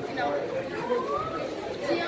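Indistinct chatter of several voices at once, echoing in a large hall.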